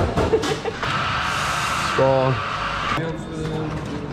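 Café espresso machine's steam wand hissing for about two seconds, a steady high hiss that starts and stops abruptly, with voices around it.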